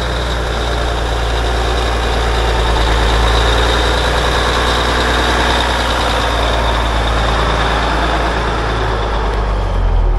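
A 6x6 wrecker truck's engine running as the truck drives slowly up to and past close by, a steady low engine note that grows louder as it nears.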